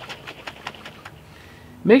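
Water sloshing inside a capped glass quart jar that is shaken hard by hand, a fast, irregular run of splashes that dies away a little past halfway.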